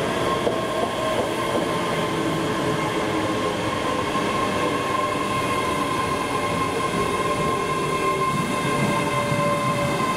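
ScotRail Class 385 electric multiple unit moving through the station, with a steady whine over the rumble of its wheels on the rails.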